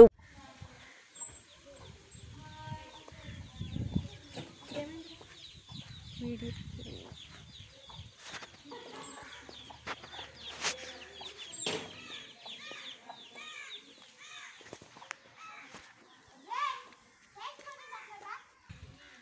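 Faint outdoor ambience with birds calling: short repeated calls that grow busier in the second half, with a few faint knocks.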